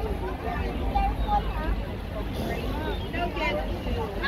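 Chatter of children's and adults' voices over a steady wash of water running down the kugel ball fountain's base.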